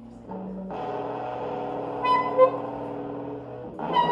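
Live electric guitar and saxophone duo: an electric guitar chord is struck under a second in and left ringing, with a few short higher notes over it about two seconds in.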